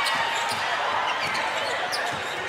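Basketball dribbled on a hardwood court, a couple of sharp bounces heard over the steady murmur of an arena crowd.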